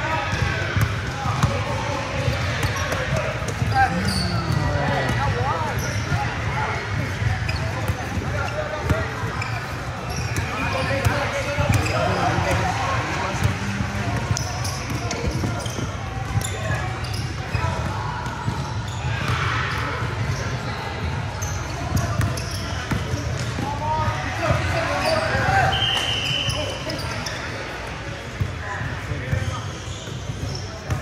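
Basketball bouncing on a hardwood gym floor during a game, mixed with the voices of players and onlookers in a large gym.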